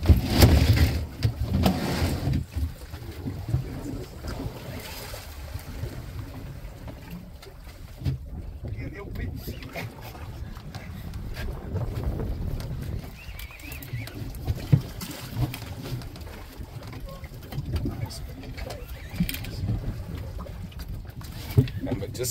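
Steady low rumble of a small boat at sea, louder in the first couple of seconds, with scattered knocks and clicks.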